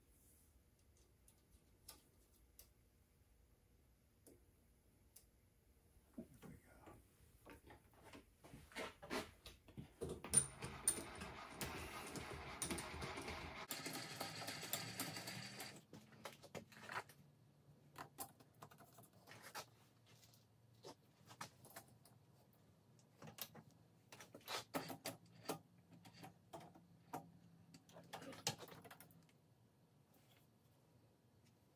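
Light metallic clicks and clinks of valve springs, retainers and a spring compressor being worked on a cast-iron cylinder head, with a denser stretch of rattling and handling noise about ten to sixteen seconds in.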